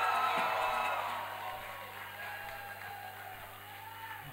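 Background music with an audience cheering and applauding, the crowd noise fading away over the first two seconds.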